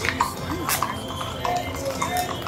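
Hooves of longhorn cattle and horses clopping on a brick street, a few sharp clicks heard over crowd chatter.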